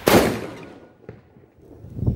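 Tracer bomb firecracker exploding in a single sharp bang right at the start, its report dying away over about half a second.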